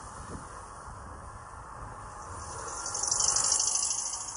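City street traffic with a steady rumble. A car passing close adds a loud high hiss that swells about two seconds in and peaks near the end.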